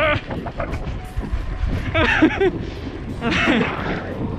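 Wind buffeting the microphone of a camera on a bicycle ridden hard, a steady low rumble, with two short shouts about two and three and a half seconds in.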